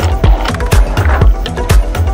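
Electronic dance music from a continuous DJ mix: a steady four-on-the-floor kick drum at about two beats a second under a bassline and hi-hats.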